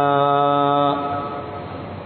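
A man's voice chanting Quranic recitation, holding one long steady note at the end of a verse that stops about a second in, followed by faint hiss.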